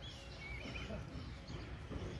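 Quiet open-air ambience: a steady low rumble with a few faint, high, wavering chirps, mostly in the first second.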